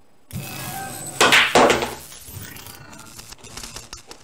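A pool shot: the cue tip strikes the cue ball, then, a little over a second later, the cue ball cracks into the object ball and the object ball drops into the corner pocket, followed by fainter rattles.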